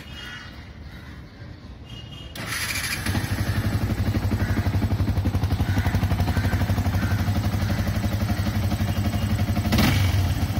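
Motorcycle engine idling steadily with an even pulse, coming in about two and a half seconds in after a quieter stretch.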